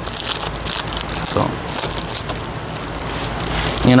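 Close crackling and crinkling as a sheet of 3M magnetic material and its wrapping are handled, steady throughout, with one short spoken word about a second in.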